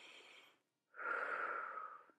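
A woman breathing audibly through a close microphone while holding a stretch: one breath trails off about half a second in, and another, slightly louder and faintly whistly, starts about a second in.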